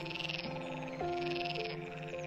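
Frogs calling in rapid trilling pulses, in two stretches, over soft background music of held notes.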